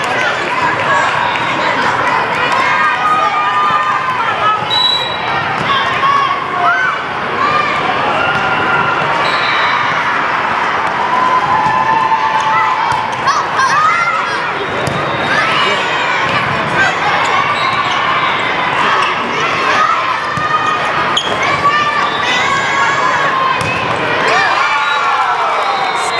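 Indoor volleyball rally: the ball being struck repeatedly by players' hands and arms, with players calling out and spectators shouting and cheering, echoing in a large hall.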